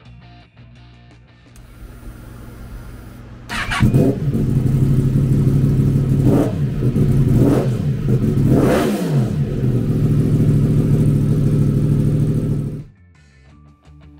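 2018 Yamaha MT-10's 998cc crossplane inline-four, breathing through a Two Brothers Racing aftermarket exhaust. It starts up about three and a half seconds in and settles to idle. It is revved with three quick throttle blips, the last the highest, then idles steadily and is shut off near the end.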